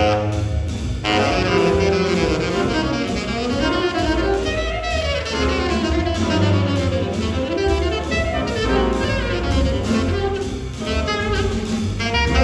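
Live jazz band playing: trombone and saxophone melody lines over piano, double bass and drum kit.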